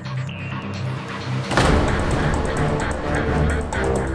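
Dramatic background score: low held tones, then a sudden loud hit about a second and a half in, after which the music turns fuller and louder with a quick ticking pulse.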